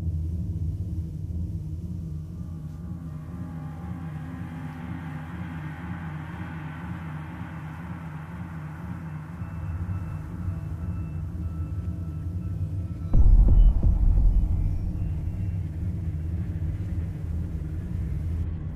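A low, steady rumbling drone with a regular throb, and a sudden deep boom about thirteen seconds in that fades away over a few seconds.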